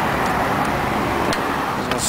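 Steady low rumble of outdoor background noise, with a few faint clicks as the plastic headlight assembly is handled.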